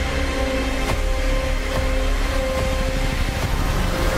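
Dense trailer soundtrack of sustained orchestral music over a low battle rumble, with sharp impacts of explosions about one second in and again near two seconds.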